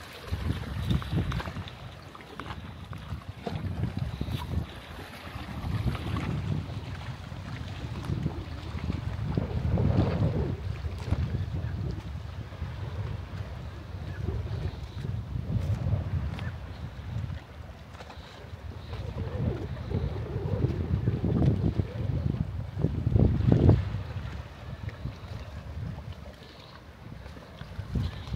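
Wind buffeting the microphone in uneven gusts, a low rumble that swells and fades every few seconds, strongest about twenty-three seconds in.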